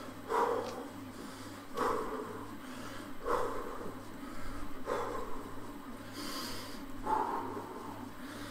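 A man breathing hard from exertion on an exercise bike, blowing out a heavy breath about every one and a half seconds.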